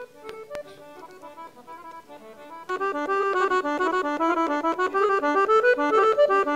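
Weltmeister piano accordion playing a Bulgarian folk tune solo. A soft, sparse phrase opens it, then full, loud playing starts about three seconds in.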